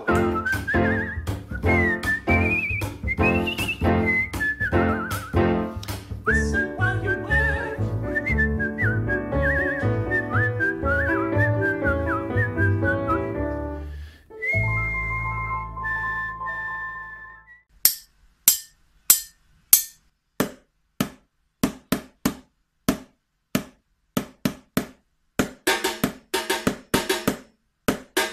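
A whistled melody over rhythmic backing music, which stops about fourteen seconds in; a held steady note follows for about three seconds. Then a metal spoon taps on kitchen containers in single sharp knocks, about two a second.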